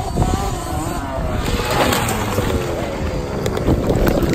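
Motocross bike engines revving and easing off as the bikes climb toward the microphone, with wind rumble on the microphone. A few knocks near the end as the phone is jostled.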